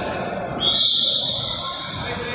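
Referee's whistle blown once: a single high, steady blast of about a second, starting about half a second in.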